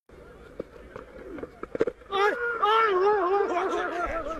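A quiet stretch with a few faint clicks, then, about two seconds in, a loud, long, wavering call from a voice.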